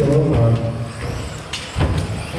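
1/10-scale electric stadium trucks with 13.5-turn brushless motors racing on an indoor off-road track: motor whine and tyre noise, with two sharp knocks near the end.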